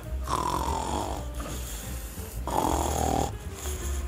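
A Labrador snoring in her sleep: two long snores of about a second each, one just after the start and one past the middle.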